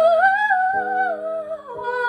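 A woman's voice holding a wordless sung note that rises and then falls, over sustained chords on an electronic keyboard; a new chord is struck about a third of the way in and another near the end.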